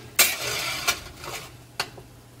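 A spatula scraping across a ribbed metal sheet pan as roasted squash slices are flipped. There is a loud scrape about a quarter second in, then two sharp clicks against the pan, one near the middle and one near the end.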